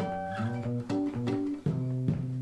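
Acoustic guitar playing an instrumental passage: plucked notes changing every fraction of a second over low bass notes, with a new bass note struck firmly near the end.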